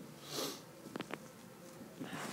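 A man's short sniff through the nose, then two faint clicks about a second in.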